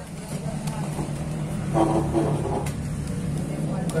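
A motor vehicle's engine running steadily and growing slightly louder, with a brief voice about two seconds in.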